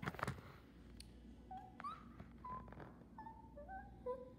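A pet animal making a run of short chirps, each held on one pitch, starting about a second and a half in, after a few clicks of toy cars being handled at the start.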